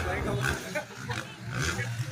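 Dirt bike engines running at a motocross track, with people's voices over them.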